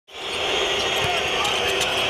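Steady noise of a large arena crowd during a basketball game, with a ball bouncing on the hardwood court a few times.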